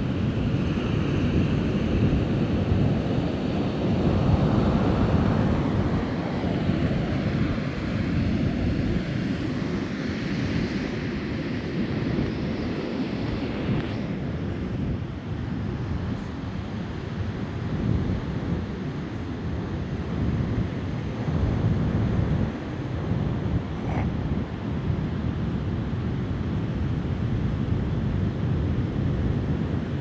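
Gusty wind buffeting the microphone in a continuous low rumble that swells and eases, with the wash of ocean surf underneath.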